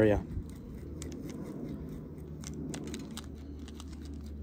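Small pieces of mineral grit being sprinkled by hand over a seed pot: light, irregular clicks as the grit is picked from a metal tray and drops onto the soil surface.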